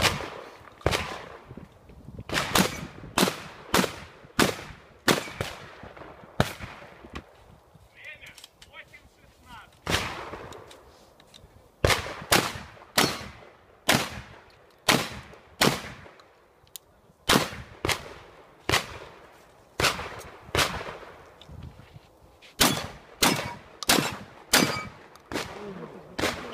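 A shotgun fired over and over during a practical shooting stage, the shots coming singly and in quick pairs or triples. There is a gap of about three seconds partway through, after which the firing resumes.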